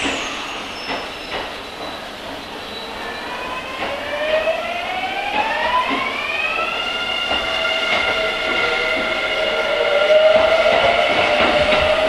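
A Kintetsu commuter electric train pulling out of the station. Its traction motors whine in several tones that rise in pitch from about four seconds in, then level off into a steady whine that grows louder as the train gathers speed. A few clicks and knocks from the wheels and running gear are scattered through it.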